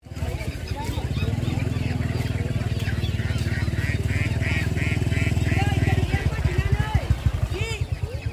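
A small motorcycle engine running close by with a steady low rumble that turns into an uneven throb over the last two seconds, with people talking over it.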